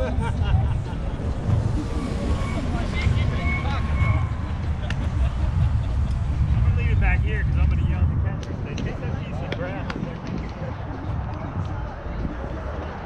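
Indistinct background voices of players and spectators talking and calling, over a steady low rumble.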